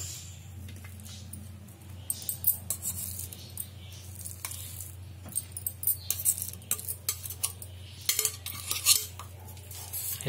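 Steel slotted spoon scraping and clinking against the inside of a stainless-steel mixer-grinder jar while ground kebab mixture is scooped out, in irregular scrapes and sharp clicks. A steady low hum runs beneath.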